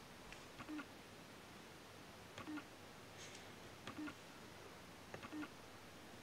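Faint, scattered clicks and light taps of fingers handling a small plastic sling pot, a few times over quiet room tone.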